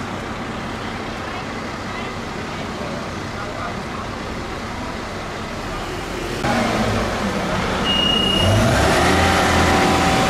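Fire trucks' diesel engines running in a street, a steady rumble that gets louder about six seconds in. Near the end there is a short high warning beep from a truck.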